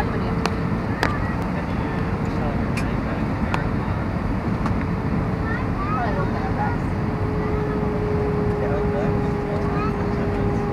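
Steady cabin noise inside an Airbus A320 on approach: engine and airflow roar with a steady hum that drops slightly in pitch about seven seconds in. A few small clicks come in the first seconds.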